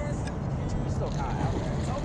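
Steady low rumble of background noise, with faint voices talking in the background about a second in.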